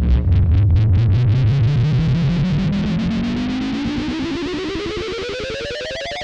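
Logo intro music: a distorted, electronic-sounding riser that climbs steadily in pitch, pulsing in a rhythm that speeds up as it rises.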